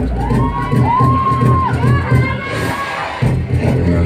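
A group of students shouting a cheer chant together, with long held shouts in the first half, over crowd cheering.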